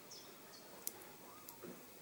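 Small neodymium magnet balls snapping onto a cluster of magnet balls: two faint, sharp clicks, about a second in and again half a second later.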